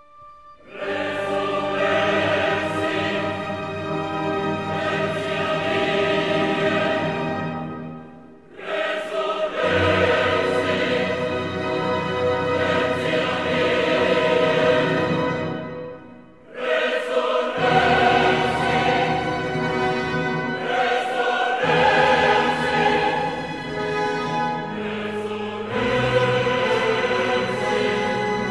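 Choir singing with orchestral accompaniment in long held phrases, breaking off briefly twice, about 8 and 16 seconds in.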